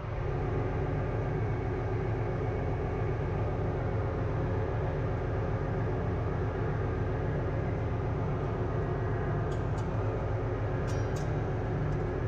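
Steady low drone of a ship's engine-room machinery, heard from inside the main engine's steel scavenge air receiver, with a few faint clicks near the end.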